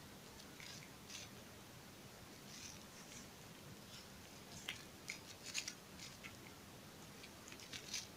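Faint, scattered clicks and ticks of small loose rhinestones being handled and pressed into empty spots on a rhinestone band by hand, with quick clusters of clicks past the middle and again near the end.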